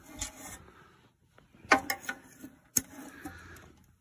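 A hand rummaging and rubbing through a wad of vacuumed dust and lint in a metal garbage can, with a rustling, scraping sound and a few sharp knocks against the can.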